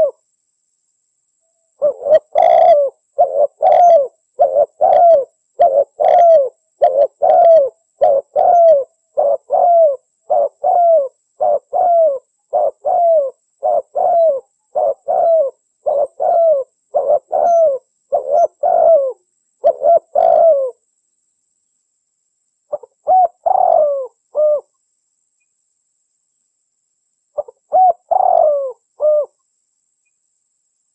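A dove cooing in a long run of short, evenly spaced coos, about two a second, each bending slightly down in pitch. The run stops about twenty seconds in, and after pauses two short bursts of the same coos follow.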